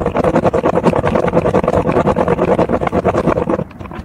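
Plastic spirograph gear wheel driven fast round the inside of a toothed plastic ring by a pen, its teeth clattering in a quick, steady run of clicks. The clattering stops near the end as the drawing is finished.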